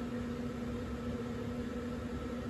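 Electric blower fan of a 12-foot constant-air inflatable, a standard YF-80A unit without a slow starter, running steadily: an even hum over a rush of air.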